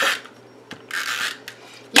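Green cardstock sliding across paper: two short dry scrapes, the second about a second in and a little longer.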